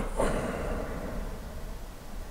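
A slow, audible exhale by a man doing qigong breathing: a soft breathy hiss that fades out within about a second, leaving faint room hum.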